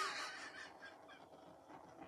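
A handheld torch flame hissing briefly over wet acrylic paint, popping air bubbles, fading out within the first half second. Faint quiet handling sounds follow.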